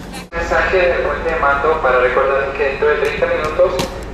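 Indistinct voices talking, with a few sharp clicks near the end.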